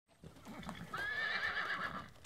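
Horse whinnying: one wavering high call lasting about a second, starting about a second in, after some quieter, lower sounds.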